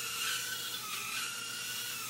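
Micro quadcopter drone's tiny electric motors and propellers running: a steady high whine.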